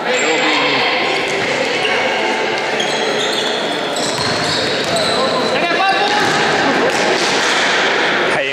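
Echoing sports-hall din of an indoor futsal game: voices of players and onlookers, a ball being kicked and bouncing on the hard court floor, and short high squeaks of shoes on the court.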